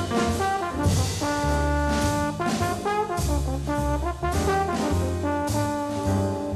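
Hard bop jazz recording: brass horns, trumpet and trombone, playing held notes that change about every half second to a second over the band.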